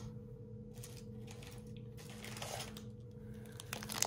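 Light scattered clicks and faint crinkling of hands handling a wax melt sealed in a clear plastic bag, over a steady low hum.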